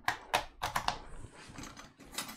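A few sharp clicks in the first second, then lighter clatter: hands handling cables and small objects on a desk while a power lead is being connected.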